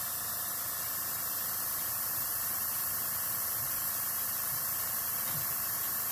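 Airbrush hissing steadily as it blows compressed air over wet alcohol ink on photo paper.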